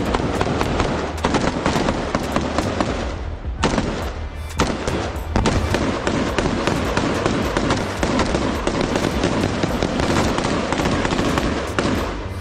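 Close-range rifle gunfire in a firefight: many rapid shots, often overlapping, in dense bursts with a brief lull about three to four seconds in.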